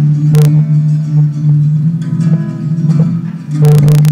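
Acoustic guitar strummed and played alone in an instrumental break of a song, with low notes ringing. It has sharp strokes about half a second in and two more near the end.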